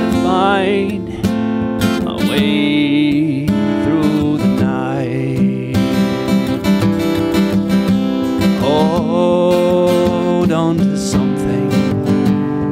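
Acoustic guitar strummed in a steady rhythm, with a man's voice singing long, wavering held notes over it.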